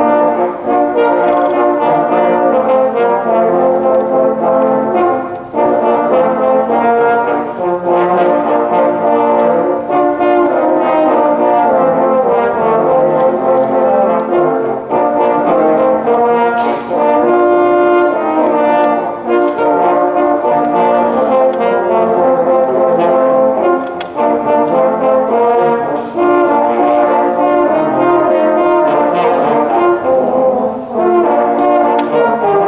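A quartet of French horns playing together in harmony, several parts sounding at once in a continuous passage. The level dips briefly twice, at about five seconds in and near twenty-four seconds.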